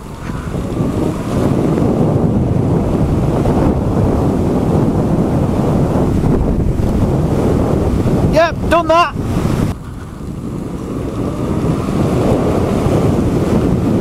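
Wind buffeting the microphone and tyres rumbling over a dirt-and-gravel track as an e-bike rides along, steady and loud. A brief voice sound comes about eight seconds in.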